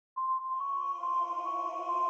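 Opening of an electronic bass-music track: a held, ping-like synth note comes in a moment after the start over lower sustained tones, with the top note stepping slightly in pitch.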